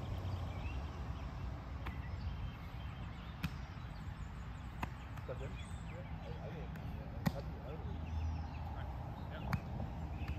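Open-air ambience between rallies: a steady low rumble with faint, distant voices, broken by four short sharp knocks spread through.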